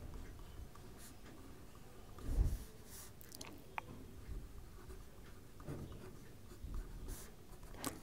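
Pen writing on a paper workbook page in faint, short strokes, with a soft low thump about two and a half seconds in.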